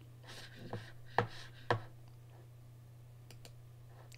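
Two sharp computer mouse clicks about half a second apart, a second or so in, after a few soft handling sounds, over a faint steady low hum.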